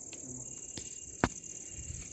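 Crickets chirring steadily in a high, even band, with one sharp click a little over a second in.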